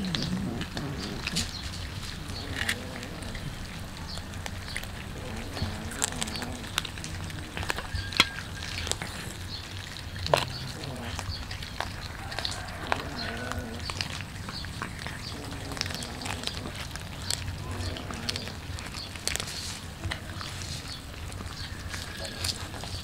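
Several cats chewing and crunching small whole raw fish, with irregular wet clicks and crackles all the way through and a few sharper snaps, the loudest about 8 and 10 seconds in.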